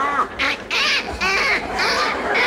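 Performers imitating birds' mating calls with their voices, most likely ducks: a quick run of short, squawking, quack-like calls, about two a second.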